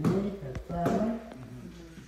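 Floor shuffleboard discs knocking together on the court: a sharp knock right at the start, then a few lighter clicks, with voices.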